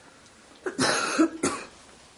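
A man coughing: a longer cough about two-thirds of a second in, followed by a short one.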